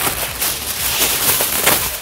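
Aluminium foil crinkling and rustling as a sheet is handled and spread over a baking dish, a continuous crackly rustle.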